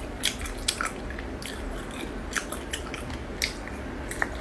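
Cooked hermit crab shell being cracked and picked apart by hand, close to the microphone, with several sharp clicks and crunches scattered through, along with biting and chewing.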